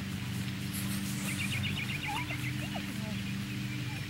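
A small bird's rapid trill of about nine high notes a little over a second in, followed by a few short whistled calls, over a steady low hum.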